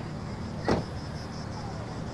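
Steady low hum of an engine running in the background, with one short sharp click about two-thirds of a second in.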